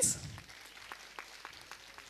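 Faint, scattered clapping from an audience, a few separate claps at a time, just after a woman's voice over the PA breaks off at the very start.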